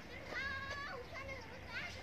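Children's voices calling and shouting during a game, faint. One call is held level about half a second in, and a short rising call comes near the end.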